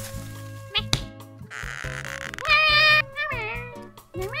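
Cartoon background music under a character's high, meow-like vocal sounds: a short rising squeak about a second in, a hissing swish, then a loud wavering cry about two and a half seconds in that drops away in a falling glide.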